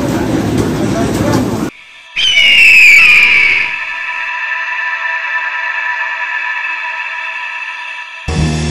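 Shopping-crowd chatter cuts off about a second and a half in. After a short gap comes the loudest part, an eagle-screech sound effect: one loud high cry falling in pitch for about a second and a half. A steady synth chord then holds to the end.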